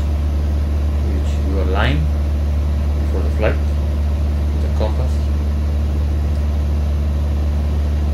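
Steady low drone of the Cessna 170B's 180-horsepower Lycoming O-360 engine and propeller in cruise, heard inside the cabin. A few short snatches of voice sound over it.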